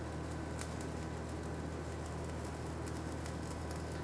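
Stick-welding arc of a Vulcan 4400-AS all-steel electrode, crackling steadily as the rod is laid flat in the joint and left to burn itself down, over a steady low hum.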